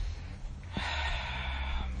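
A man's long, breathy exhaled "oh", a sigh of dismay at losing the connection, lasting about a second. A steady low hum runs underneath.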